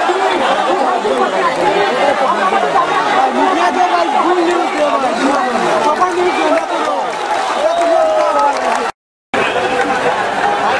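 Crowd of many voices talking and calling at once, dense and loud, breaking off for a moment about nine seconds in.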